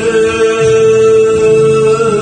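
A man singing an enka ballad into a handheld microphone, holding one long, steady note over the karaoke backing track.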